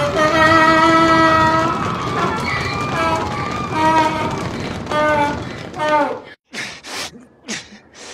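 Cartoon sound effects: a wordless, pitched voice-like cry held for about a second, then shorter rising and falling cries. The sound breaks off suddenly after about six seconds, and several short breathy noise bursts follow.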